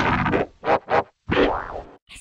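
Electronically distorted cartoon sound effects: a dense sound cuts off about half a second in, followed by two short boing-like sounds, the second rising and then falling in pitch.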